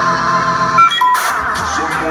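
Metalcore band playing live, heard from within the crowd in a concert hall, with a short break in the music about a second in before it comes back in full.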